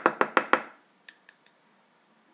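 Plastic makeup compact being handled. A quick run of about five sharp taps comes at the start, then three light clicks about a second later.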